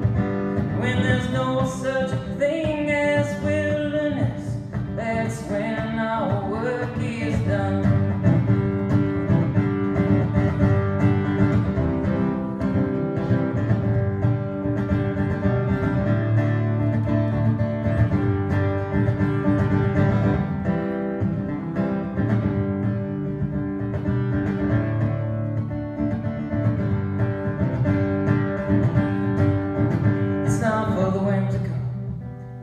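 Solo acoustic guitar strummed steadily, with a voice singing over it for roughly the first seven seconds, then the guitar carrying on alone as an instrumental stretch.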